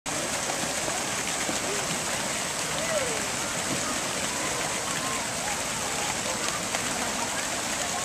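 Steady hiss of splash-pad fountain jets spraying and falling into a shallow pool, with faint voices of children and adults in the background.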